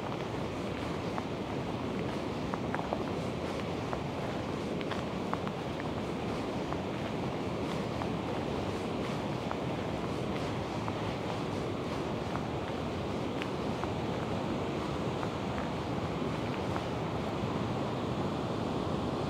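Steady rushing of a fast-flowing river just below a waterfall, a continuous even roar of water.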